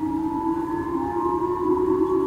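Japanese J-Alert missile-warning siren from outdoor loudspeakers, sounding a steady two-tone wail that wavers slightly in pitch, heard through a window.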